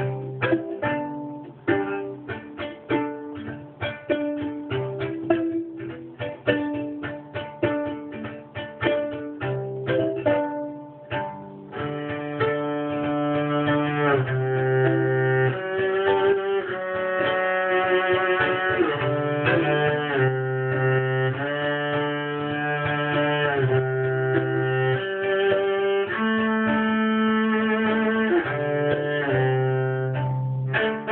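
Solo viola: for about the first twelve seconds it is played pizzicato, a run of quick plucked notes, then it switches to the bow and plays long sustained notes, often two strings sounding together.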